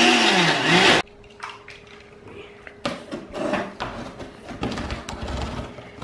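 Countertop blender with a glass jar running on strawberries and blueberries, with a laugh over it, then cutting off suddenly about a second in. Quieter scattered knocks and handling noises follow.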